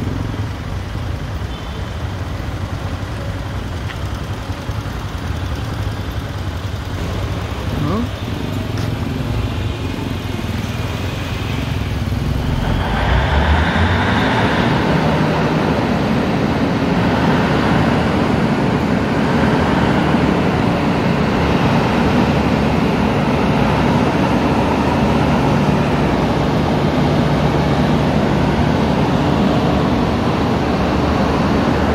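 Urban street noise: traffic running past with indistinct voices mixed in, growing louder about a third of the way through and staying steady after that.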